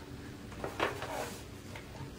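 Scoring tool drawn along a groove of a plastic scoreboard, pressing a score line into a sheet of cardstock: faint scraping, then paper sliding on the board.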